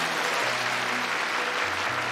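Audience applauding, a steady dense clapping, with a quiet music bed underneath.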